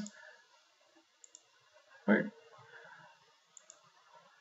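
Faint computer mouse clicks, in two quick pairs about two seconds apart.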